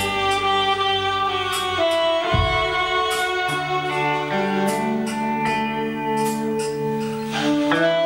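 Live band playing a slow instrumental passage: electric guitar and long held melody notes over sparse drums, with occasional cymbal strokes and a kick-drum thump about two seconds in.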